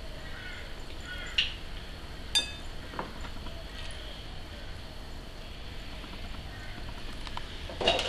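A fish fillet being turned in thick batter in a ceramic bowl, with a few light clinks of a metal fork against the bowl, two of them ringing briefly.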